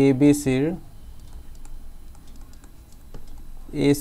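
Faint, scattered tapping clicks of a stylus writing on a tablet, between a man's speech in the first second and near the end, over a low steady hum.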